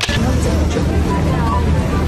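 Loud street noise: a steady rumble of road traffic with a faint murmur of voices.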